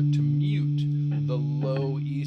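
Guitar F-sharp power chord ringing out and slowly fading, its unplayed strings lightly muted by the index finger.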